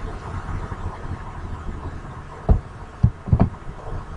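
Dull thumps of computer keys and mouse clicks picked up through a desk microphone as code is copied and pasted, three of them in the second half, over a steady low hum.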